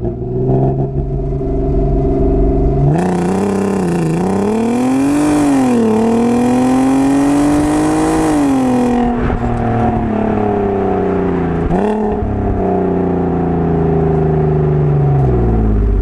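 Audi A3 3.2's VR6 engine through an RS3-style quad-tip exhaust, held at steady revs and then launched with launch control about three seconds in. The revs climb with a loud rush, dipping at quick gear changes, then hold steadier for several seconds before dropping back to low revs near the end.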